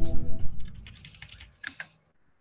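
The tail of the quiz's music and a deep, low boom die away in the first half second. A quick run of computer-keyboard clicks follows, with two sharper clicks near the end.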